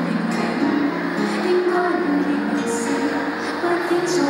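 A woman singing a slow Cantopop song live into a handheld microphone, with held notes over instrumental accompaniment.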